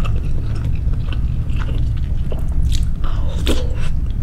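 Close-miked chewing of bakso meatballs from a soup: soft, wet mouth clicks and smacks over a steady low rumble, with a louder burst about three and a half seconds in.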